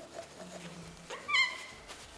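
Glass tumbler being wiped with a paper napkin and degreaser, giving one short high squeak about a second in as the paper drags on the glass.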